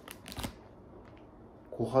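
Brief crinkling and rustling of a clear plastic package being handled, a few quick crackles in the first half second.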